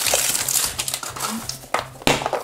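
Printed plastic blind-bag wrapper crinkling as hands pull it open, an irregular run of small crackles.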